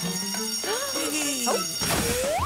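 Short wordless cartoon-character vocal sounds, with pitch swooping up and down, over background music.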